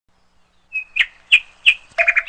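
A brief high held note, then three sharp, high bird-like chirps about a third of a second apart.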